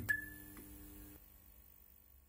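Short electronic outro music sting: a soft knock, then a brief high chime with a lower tone under it, fading out after about a second.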